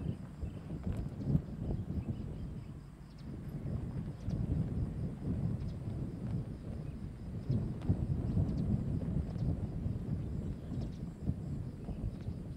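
Outdoor field ambience: an uneven low rumble that swells and dips, with a faint high pulsing tone above it and a few light clicks.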